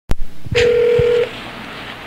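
Telephone call audio: a sharp click on the line, then a single steady phone tone for under a second that cuts off, leaving quiet line hiss.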